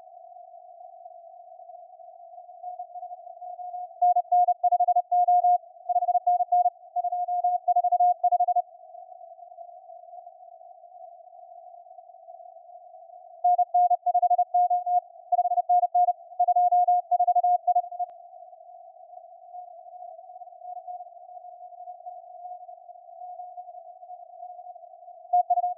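Morse code (CW) on a ham radio receiver tuned to the 20-metre band: one steady tone keyed on and off into dots and dashes. Two loud passages of keying come about four seconds in and again about thirteen seconds in. Fainter keyed signals and a low hiss run between them.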